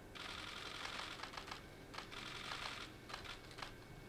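Camera shutters clicking: two dense bursts of rapid clicks, the first about a second and a half long and the second shorter, then scattered single clicks.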